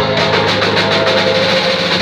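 A live band of electric guitar, electric bass, drum kit and keyboards playing loud, dense instrumental music, with a steady bass line under quick, even strokes on the drums.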